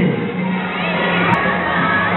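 A crowd of children shouting and cheering together, with music playing underneath.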